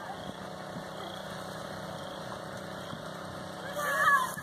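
Steady low engine hum with running water, typical of a pump feeding a hose that fills a mud pit. A voice calls out briefly near the end.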